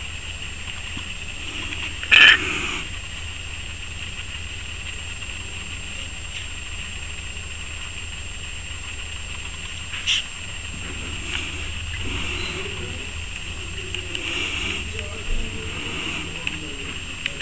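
Male ten-lined June beetle giving a few short, raspy hisses, the defensive sound it makes when it feels threatened. The strongest comes about two seconds in, with others near the middle and toward the end, over a faint steady hiss.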